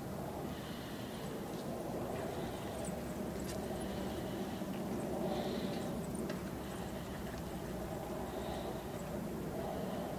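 Steady outdoor background noise, a low even rumble, with a few faint clicks scattered through it.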